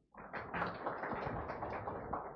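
Small audience applauding: many close-packed hand claps, fading out after about three seconds.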